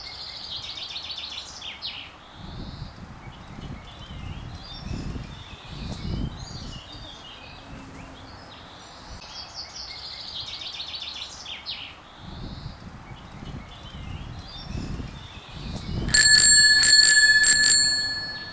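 A bicycle bell rung rapidly and continuously for about two seconds near the end, the loudest sound here. Before it, birds chirp now and then over a low outdoor rumble.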